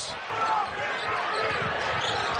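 Basketball arena crowd noise, a steady din of many voices, with a ball bouncing on the hardwood court.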